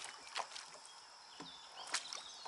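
Kayak paddle strokes in calm water: a few short splashes and knocks, the sharpest just before the end.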